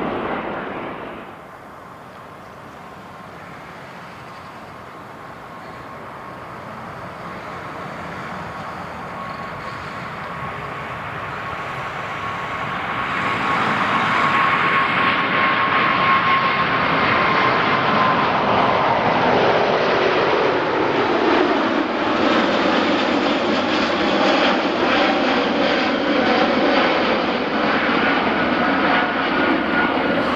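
Airbus A380-861's four Engine Alliance GP7200 turbofans at takeoff power. The sound drops suddenly near the start, then builds steadily as the jet approaches. A whine falls in pitch as it passes about twenty seconds in, and a loud, steady roar continues as it climbs away.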